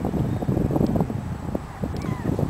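Wind buffeting the camera microphone: an uneven, gusting low rumble.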